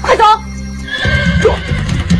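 A horse whinnying near the start and again briefly later, over background music: a held low chord that gives way to drumming about a second in.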